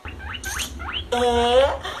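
Hamster squeaking: several short, quick rising squeaks, then a longer squeak about a second in, over a low hum.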